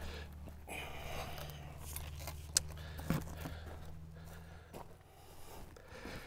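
Handling noise as an extension pole and a cardboard shield are picked up and fitted together: light rustling and clinks, with a couple of sharp clicks around the middle. A steady low hum runs underneath.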